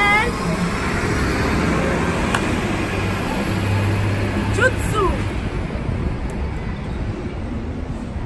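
Street traffic noise with a bus going by, a low engine hum swelling in the middle and fading toward the end.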